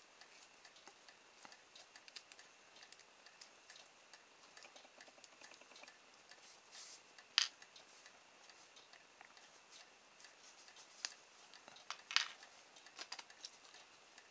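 Faint small clicks and ticks of a jeweller's screwdriver backing out the screw of an RC servo's white plastic output arm and the arm being worked off its shaft, with a sharper click about seven seconds in and another about twelve seconds in.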